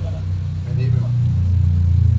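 Low, steady rumble of a vehicle engine running, growing louder toward the end.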